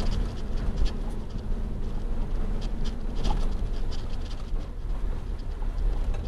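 Inside a moving truck's cab: a steady low rumble from the engine and the tyres on the road, with scattered light clicks and rattles.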